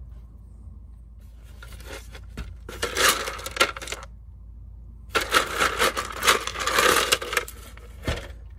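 Wet pebbles clattering against each other and the plastic sides of a tub as a hand digs and stirs through them, in two spells of a second or two each.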